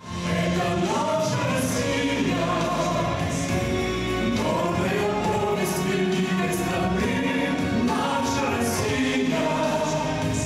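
A man and a woman singing a pop song into microphones with musical accompaniment.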